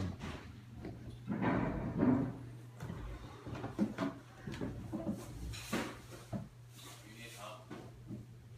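Muffled voices away from the microphone, with scattered short knocks and bumps over a low steady hum.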